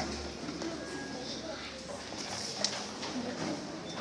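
Indistinct murmur of many voices in a large hall, with scattered faint clicks and knocks and one sharp click about two-thirds of the way through; no music is playing.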